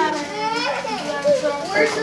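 Several voices, children's among them, talking over one another in a small room, with no single line of words standing out.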